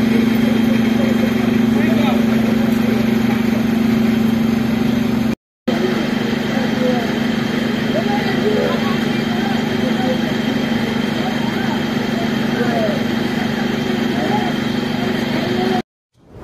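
Steady low hum of idling emergency-vehicle engines, with the voices of people talking and calling out over it. The sound cuts out for a moment about five and a half seconds in.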